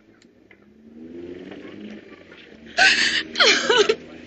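A woman crying, breaking into two loud sobs in quick succession near the end after a quieter stretch.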